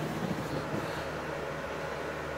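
Steady room background: a low hum with an even hiss, with no distinct events.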